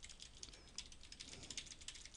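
Faint computer keyboard typing: a fast, steady run of keystrokes.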